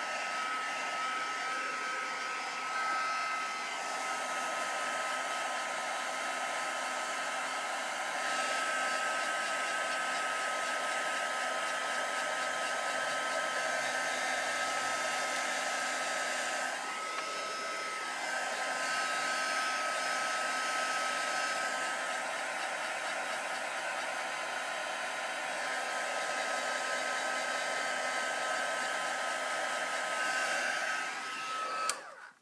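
Handheld heat dryer running continuously, drying a paper craft piece: a steady rush of air with a high-pitched motor whine, its tone shifting slightly now and then.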